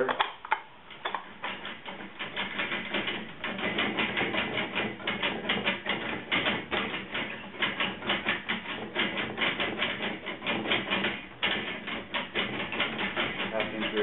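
Sheet-metal panel being rolled back and forth through an English wheel, a rapid, continuous crunching as the wheels press over the small lumps in the metal.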